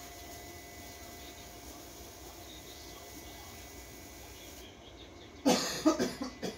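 Low, steady garage background with a faint thin hum, then near the end a man coughs loudly, a sudden harsh burst followed by a shorter second one.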